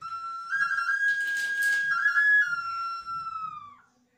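A small handheld whistle flute, cupped in both hands, blown in a short phrase. A clear held note steps up a little with quick trills, drops back to the first pitch, and slides down as it dies away near the end.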